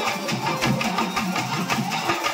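Dolu barrel drum struck by hand at close range, with other stick-played drums in a quick, steady beat. Sustained keyboard notes run underneath.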